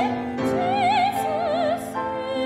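A soprano singing held notes with a wide vibrato, accompanied by a grand piano.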